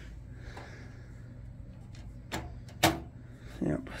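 Two sharp knocks about half a second apart, a little past halfway, from the open steel desktop computer case being handled and tilted, over a steady low hum. A brief vocal sound follows near the end.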